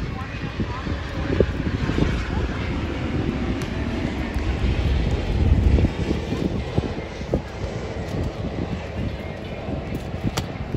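Wind buffeting the microphone in an uneven, gusty rumble, loudest about five and a half seconds in, with faint voices in the background.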